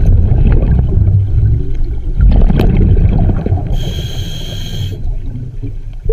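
Scuba diver breathing on a regulator, heard through the water: a long rumble of exhaled bubbles, then a hissing inhalation through the regulator lasting about a second past the middle, then a quieter spell.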